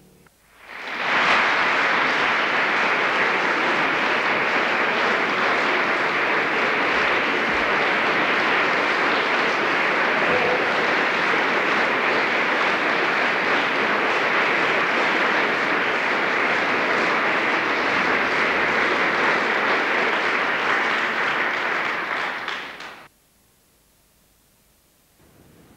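Concert audience applauding steadily: the clapping swells in quickly just after the start and stops suddenly near the end.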